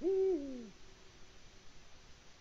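A male Eurasian eagle owl gives one deep hoot, about three-quarters of a second long, held level and then dropping in pitch at the end.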